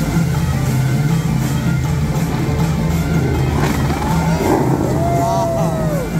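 Music played over loudspeakers for a dancing-fountain show, with a steady bass, mixed with the rushing spray of the fountain's water jets.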